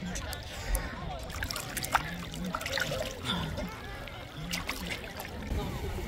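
Small waves of shallow sea water lapping and splashing around a person standing in the water, with short sharp splashes throughout. Indistinct voices of other people can be heard behind it.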